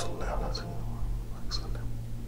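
A man speaking very softly, close to a whisper, with short hissing s-sounds at the start and about one and a half seconds in, over a steady low hum.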